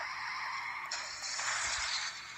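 A steady hiss of noise, brighter and higher about a second in, played from the movie's soundtrack through a TV speaker.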